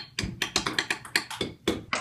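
Table tennis ball clicking rapidly back and forth between the paddles and the table during a fast rally, about four to five sharp ticks a second.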